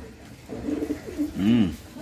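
Domestic pigeons cooing, with one clearer coo that rises and falls in pitch about one and a half seconds in.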